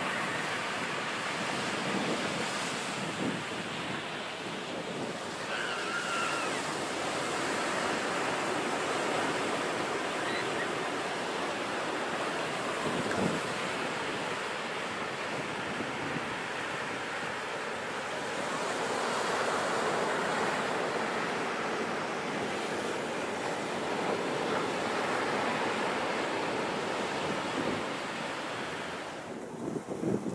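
Ocean surf breaking on a beach, a steady wash that swells and eases slowly, with wind buffeting the microphone.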